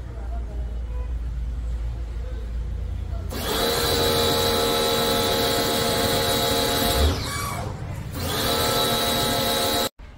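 Electric pressure washer's motor and pump running with a steady high whine as the spray gun is triggered, starting about a third of the way in over a low rumble. It stops and winds down briefly near the two-thirds mark, starts again, and cuts off suddenly near the end.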